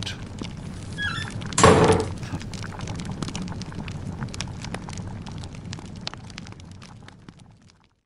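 A log fire crackling, with scattered sharp snaps over a low rumble, fading out near the end. About a second and a half in there is one loud, sudden crash, like a heavy thud or a door banging.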